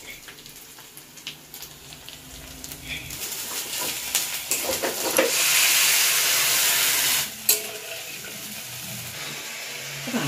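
Masala frying in a kadai, with a few light spoon clicks at first. About five seconds in, water is poured into the hot pan and the sizzling turns loud, then drops off suddenly and carries on as a quieter steady sizzle.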